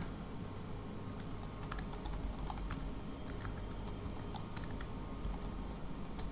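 Typing on a computer keyboard: a run of light, irregularly spaced keystrokes.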